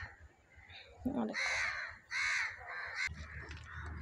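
A bird calling twice: two short calls a little under a second apart, starting about a second and a half in.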